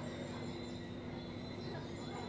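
Steady background hum and hiss with a few held tones, and no distinct sound standing out.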